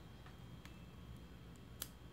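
Near silence: quiet room tone with a few faint ticks and one sharper click near the end.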